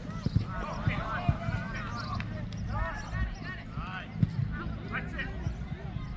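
Distant voices of players and spectators calling across a soccer field, with several short, sharp thumps scattered through.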